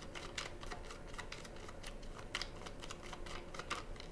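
Tarot cards being shuffled and handled, a run of quick, irregular light clicks and flicks of card on card.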